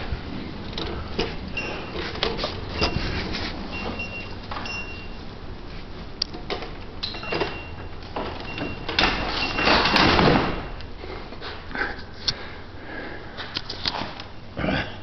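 A manual wheelchair rolling with small clicks and rattles, and a small bell on a dog's collar jingling now and then, while passing through automatic sliding doors. A louder rush of noise comes about ten seconds in.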